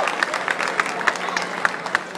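Crowd in a ballpark grandstand applauding and cheering, with many scattered claps that thin out toward the end.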